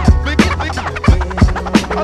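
Hip hop beat with turntable scratching over the drums and bass, no rapping; sharp drum hits about every half second.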